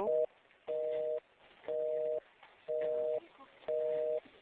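Telephone busy tone heard over the phone line after the call is cut off: a steady two-note beep, half a second on and half a second off, about once a second.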